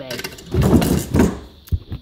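A wooden drawer being slid shut: a rumbling scrape lasting about a second, then a short knock near the end as it closes.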